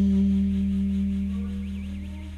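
Background jazz music ending: a final chord held over a low bass note and slowly fading away.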